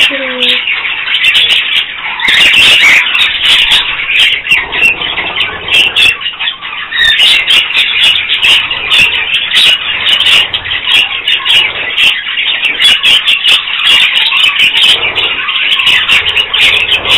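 A flock of budgerigars chattering and chirping continuously, many birds calling at once in a dense, high-pitched warble.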